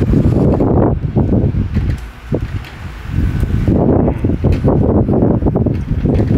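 Wind buffeting the microphone in loud, uneven gusts, easing off about two seconds in and picking up again about a second and a half later.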